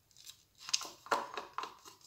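A few short scrapes of a thin stick against the inside of a plastic cup, scraping leftover acrylic paint out of it.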